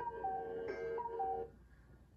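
An electronic chime: a high note stepping down to a lower one, played twice over a held tone, then stopping about one and a half seconds in.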